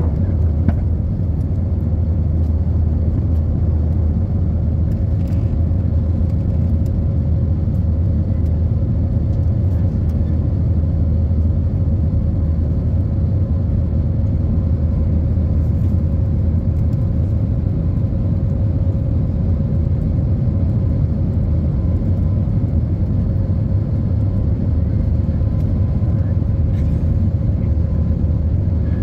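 Steady low roar of an Airbus A320-family airliner's jet engines and rushing air heard from inside the cabin while climbing out after take-off, with a faint steady hum over it.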